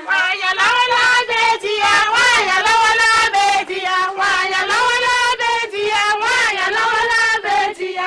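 Women singing a melody in a high voice, in short phrases that rise and fall with only brief pauses between them.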